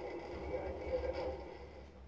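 Faint, muffled audio from a television speaker playing a dash-cam compilation, with indistinct voice-like sound that fades toward the end.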